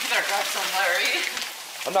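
Mostly a person talking, with a steady rustle underneath that fits plastic grocery bags being handled in a car trunk.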